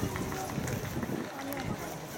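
Indistinct chatter of many voices from a crowd of spectators, with no single clear speaker.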